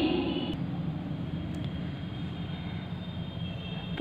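Steady low background hum with faint scratching of a pen writing a formula.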